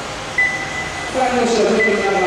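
Several 1/12-scale electric RC pan cars racing on a carpet track, their motors whining and sliding up and down in pitch as they accelerate and brake. A steady high beep starts about half a second in.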